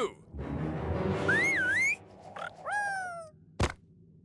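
Cartoon sound effects: a loud rushing, scraping noise with a wobbling whistle-like squeak over it, then a falling squeaky call about three seconds in and a single sharp click near the end.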